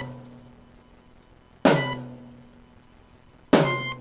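Electronic dance music in a sparse break: two single drum-like hits about two seconds apart, each with a low ringing tone that slides down in pitch and fades, quiet in between.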